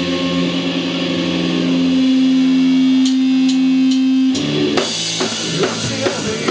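Live folk-grunge band music: an amplified acoustic guitar holds a long sustained chord that swells slightly. About four seconds in the chord breaks off and the playing resumes with picked notes and drum hits.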